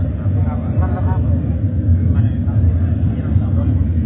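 A loud, steady low rumble with indistinct voices faintly over it.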